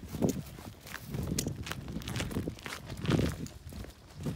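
Footsteps of someone walking over grass and dry dirt, a dull step about once a second with light clicks and scuffs in between.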